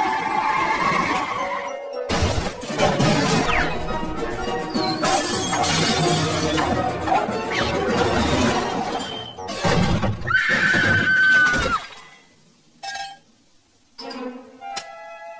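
Cartoon soundtrack: busy music with sudden crash and shatter sound effects, then it drops almost to silence about two seconds before the end.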